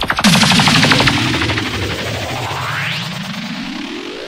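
Sound-system DJ effects in a dancehall mix: a rapid rattle of machine-gun fire about a quarter-second in, then a pulsing tone that slides low and sweeps steeply upward.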